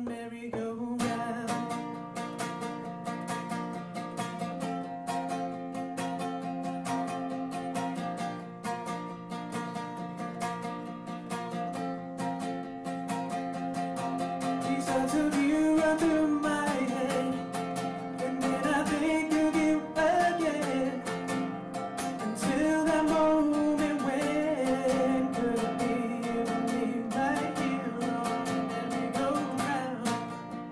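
Acoustic guitar played solo, with a man's voice singing over it from about halfway through.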